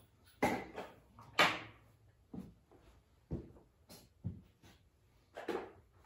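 Handling noises: about a dozen irregular knocks and clunks, the loudest about half a second and a second and a half in.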